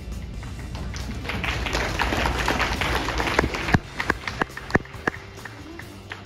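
Audience applause that builds up and then thins out to a few last single claps about four to five seconds in, over background music.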